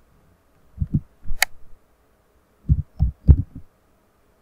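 Muffled low thuds in two clusters, about a second in and again near three seconds, with one sharp click between them: keystrokes and clicks at a computer keyboard and mouse, carried through the desk to the microphone.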